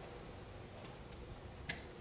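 Quiet room tone with a few faint clicks, the sharpest one near the end.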